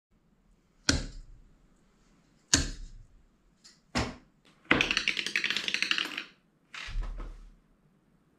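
Darts striking a dartboard lying flat on a table: three sharp hits, each about a second and a half apart. Then comes a fast rattling clatter of about a second and a half, and a duller thump near the end.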